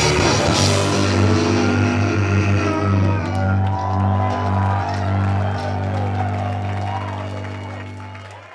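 A live punk rock band's closing chord on distorted electric guitars and bass, ringing on after cymbal crashes in the first second, with whoops and shouts from the crowd. The chord fades out near the end.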